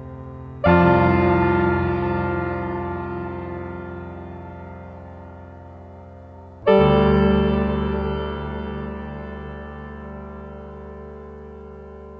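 Electronic music: a sustained, keyboard-like synthesizer chord struck twice, about six seconds apart, each one fading slowly.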